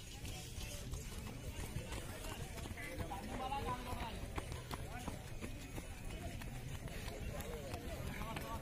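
Faint voices of people talking in the background over a steady low rumbling noise, with scattered light taps.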